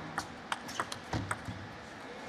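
Table tennis rally: the celluloid-type plastic ball clicks sharply off the rackets and the table, about three clicks a second, and stops about a second and a half in as the point ends.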